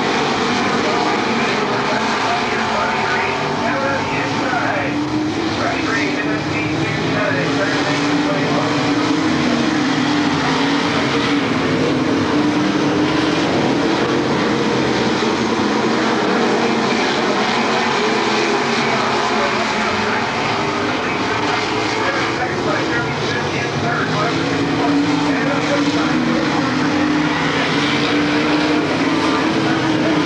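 Dirt modified race cars' V8 engines running hard around a dirt oval: a continuous, loud pack drone whose pitch wavers as the cars go through the turns and down the straights.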